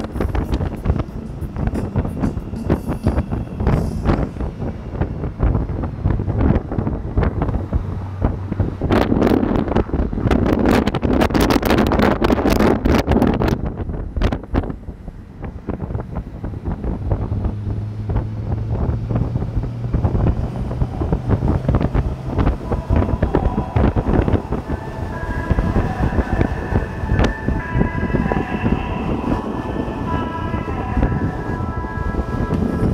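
Wind buffeting the microphone on a BMW K1600 GTL touring motorcycle at highway speed, with a steady low engine drone underneath; the wind rush swells loudest about a third of the way in. Near the end, music with held notes comes in faintly over the wind.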